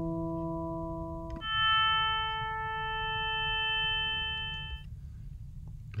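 Additive synthesizer built from summed sine-wave oscillators in a Max/MSP patch, playing two notes. A low E near 165 Hz sounds until about a second and a half in, then an A at 440 Hz takes over and fades out near the five-second mark; each note is a steady fundamental with a stack of overtones at whole-number multiples of it.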